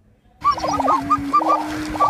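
Lesser prairie chickens calling, starting about half a second in: a quick run of short, overlapping hooked notes with a steady low tone held beneath them.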